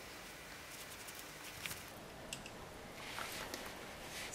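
Faint rustling of mohair yarn and a cloth doll being handled while hair lengths are hooked onto a crochet cap, with a few light ticks, and a slightly louder rustle near the end as the doll is turned over.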